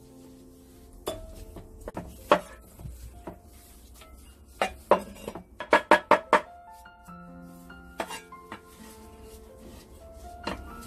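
Cleaver blade striking a wooden cutting board: a few separate chops through pork rib pieces in the first half, then a quick run of about six chops past the middle as a garlic clove is minced, and a couple more near the end.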